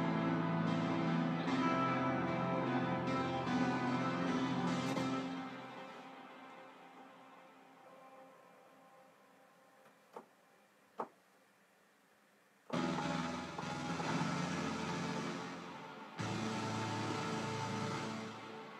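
Future bass track played back over studio monitors: sustained synth chords that fade out about six seconds in, a quiet stretch with two faint clicks, then the music cutting back in abruptly twice. It is a test of a synth filter setting, and the result is horrible.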